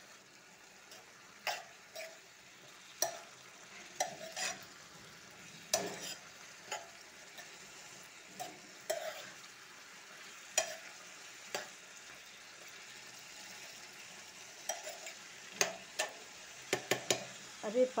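A spoon stirring wet chopped radish and radish leaves in a metal pan, scraping and knocking against the pan at irregular intervals, several times in quick succession near the end. Under it, the vegetables sizzle softly as they cook in a little water.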